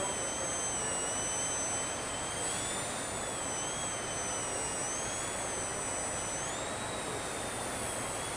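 Small electric RC airplane's motor and propeller whining, the pitch rising and falling as the throttle changes, over a steady background hiss.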